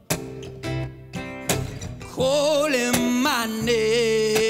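Live pop-rock: acoustic guitar chords with a male voice singing. The voice drops out briefly, then comes back about two seconds in and ends on a held note.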